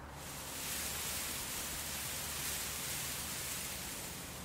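A steady hiss with a faint low hum underneath, with no music.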